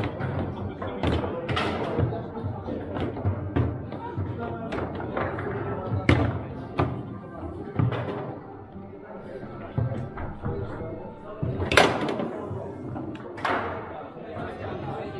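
Irregular sharp knocks and thuds of foosball play: the ball struck by the figures and hitting the table walls, and the rods clacking. The loudest cracks come about six seconds in and near the end.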